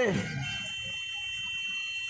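A steady, high-pitched whistle from the street public-address system's microphone and loudspeaker, holding one pitch from about half a second in while the voice is silent: acoustic feedback ringing in the PA.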